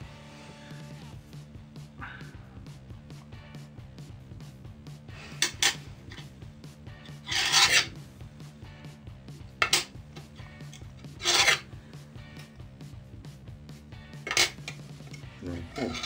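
About six scattered scraping strokes, short and noisy, the longest and loudest just under a second long near the middle, over a low steady hum.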